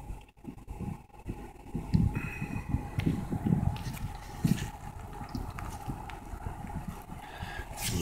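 Wind buffeting the phone's microphone in uneven low thumps and rumbles, over a faint steady tone.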